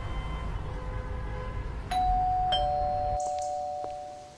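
Doorbell chime ringing about two seconds in: a higher note, then half a second later a lower note, both ringing on as they slowly fade.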